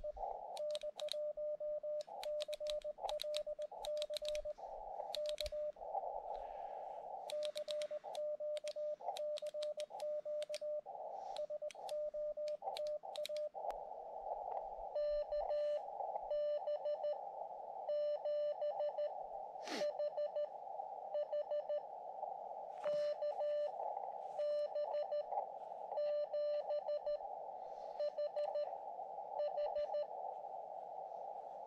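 Morse code (CW) from a portable ham radio transceiver, a single steady tone of about 600 Hz keyed in dots and dashes to call CQ, with sharp clicks among the characters in the first half. Between the transmissions comes the narrow hiss of the receiver's filtered band noise, and in the second half Morse is exchanged with a station that answered.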